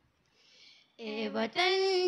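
Girls' voices singing an Urdu nazm in unison, unaccompanied: a short pause between lines, then the voices come back in about a second in, stepping up onto a held note.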